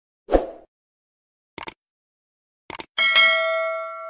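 YouTube subscribe-button animation sound effects: a short pop, then two pairs of quick mouse clicks, then a bell ding about three seconds in that rings on and fades out.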